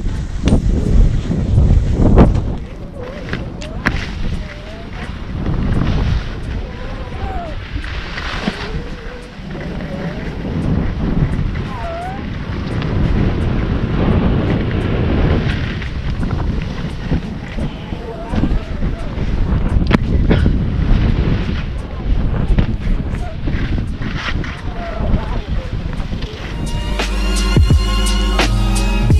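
Wind rushing and buffeting over the microphone of a camera carried on a fast ski run, with the scrape of skis over packed snow. Near the end, a music track with a beat comes in.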